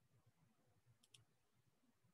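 Near silence: faint room tone, with two faint quick clicks close together about a second in.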